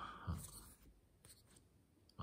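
Faint rustle and slide of playing cards being leafed through by hand, with a few soft clicks about a second in.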